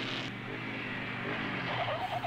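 Dirt-bike engines running steadily on a film soundtrack.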